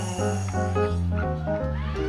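A vacuum cleaner played as an instrument, its hose held to the mouth to make wavering pitched wails that glide up and down, over a live rock band's bass, keyboards and drums.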